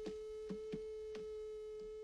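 A steady single-pitched tone, like a test tone or dial tone, held without change, with faint scattered clicks over it.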